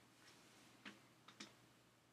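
Near silence: faint room tone with a low steady hum, broken by three faint clicks, one just under a second in and two close together about a second and a half in.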